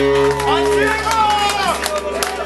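A live rock band's final held chord and amplifier hum ringing out and dying away in the second half, while the club audience shouts and cheers.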